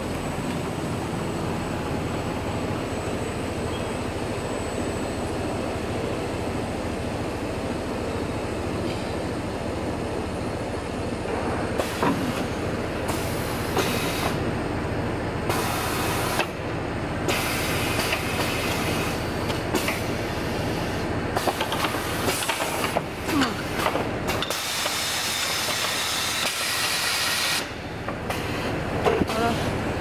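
Industrial winding machine running steadily, its rollers turning as black mesh material winds onto a roll. From about halfway through, irregular louder bursts of hissing, rattling noise come and go over the steady running.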